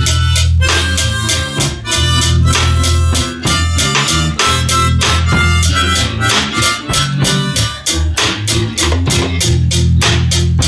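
Live band jam: harmonica played into a microphone over electric bass guitar and a drum kit keeping a steady beat.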